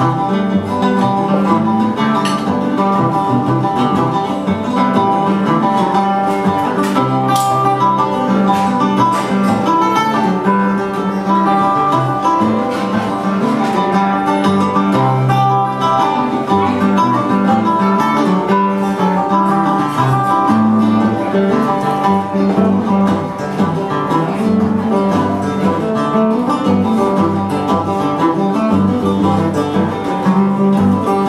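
Acoustic guitar and bouzouki playing an Irish tune together at a steady, lively pace.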